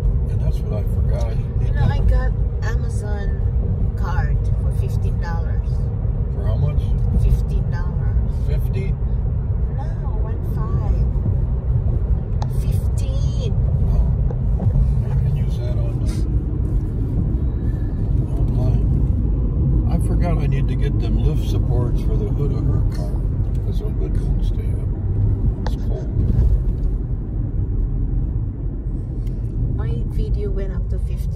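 Steady road rumble and tyre noise inside a moving car's cabin, with faint, indistinct talking at times.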